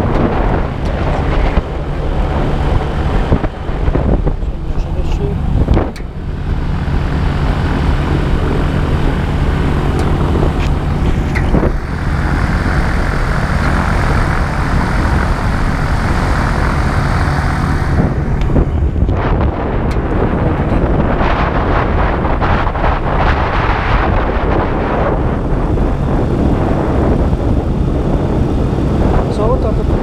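AutoGyro MTOsport gyroplane's engine and pusher propeller running steadily at low taxi power.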